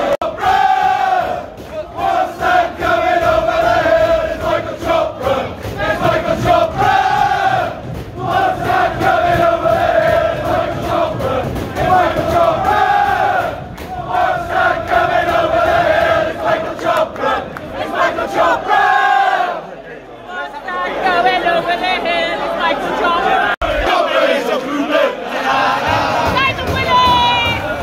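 Crowd of football supporters singing a chant together, the same sung phrase repeating about every two seconds. Near the end the chanting drops away and a thinner mix of voices follows.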